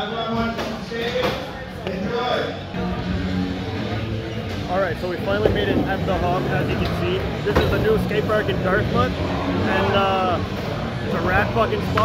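Crowd of people talking and shouting over one another in a large indoor hall, with voices growing busier and louder partway through.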